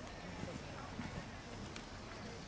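A horse's hoofbeats at the canter on soft sand arena footing, with faint voices in the background.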